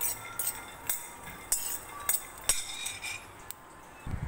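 Raw peanuts being stirred in a steel bowl for dry-roasting, clinking against the metal at an irregular rate of several clinks a second, each with a short metallic ring. The clinks die away in the last half second.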